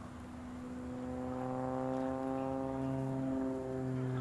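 Propeller aircraft engine droning as it passes, growing louder about a second in, its pitch bending slightly up and then down.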